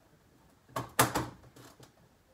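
A few knocks and clicks from a blender jar and lid being handled and set in place just before blending, the loudest about a second in.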